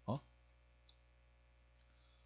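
A man's brief "어?" at the very start, then near silence with one faint click about a second in.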